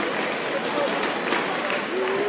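Crowd noise in a sports hall: many voices shouting and talking at once, steady throughout, with no single clear speaker.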